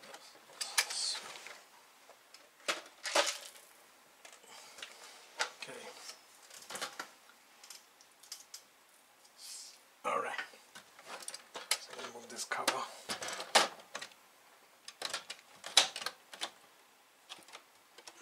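Plastic case of an Atari 1050 floppy disk drive being handled and opened, its top cover lifted off: irregular clicks and knocks of plastic parts, scattered through the whole time.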